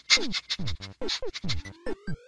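A pug snuffling and snorting with its nose against the microphone, a quick run of short noisy snorts. Near the end a rising tone glides upward.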